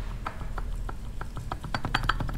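Light metallic clicking as the loose output flange of a ZF 8HP90 eight-speed automatic transmission is rocked by hand, a series of small clicks that gets busier near the end. The clicks are the free play of a flange whose nut was not torqued down, a looseness the owner suspects may have led to the transmission's catastrophic failure.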